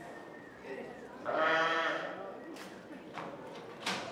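A roped calf bawling once, a single call of about a second starting about a second in, while it is pinned down and its legs tied. A sharp click just before the end.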